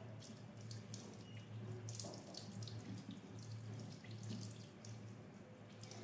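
Tap water running and splashing into a sink as a wet kitten is rinsed by hand, with scattered drips and small splashes over a steady low hum.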